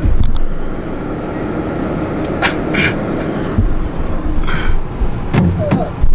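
Car cabin noise while driving: a steady low road and engine rumble, with a few short clicks.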